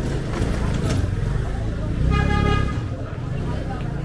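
A vehicle horn sounds once, a short steady honk about two seconds in, over street noise and voices.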